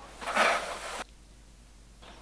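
Stiff-bristled cobweb brush scraping into the edge of a gutter, a short brushing rasp of just under a second that stops abruptly.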